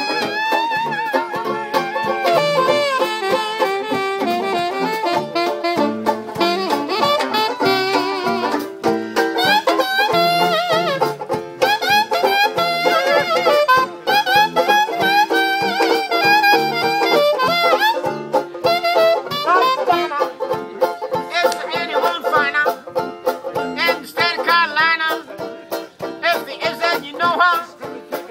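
Traditional jazz band of cornet, reeds, trombone, banjo and tuba playing an instrumental chorus, with the horns weaving melody lines over a steady strummed banjo beat.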